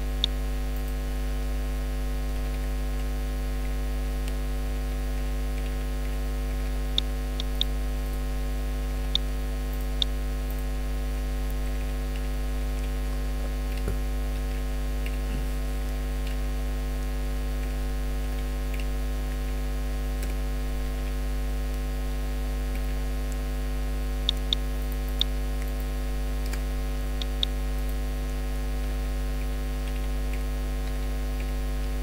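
Steady electrical mains hum with a ladder of overtones, picked up by the recording microphone. A few sharp clicks, some in quick pairs, come from keys being struck as numbers are typed into the spreadsheet.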